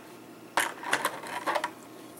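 Small hard plastic toy pieces knocking and clicking against each other and the tabletop as they are handled, in three sharp clicks about half a second apart.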